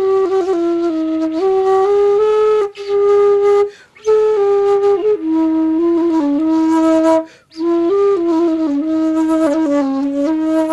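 A solo flute playing a slow melody of held notes in its low register, phrase by phrase, with short breaths between phrases.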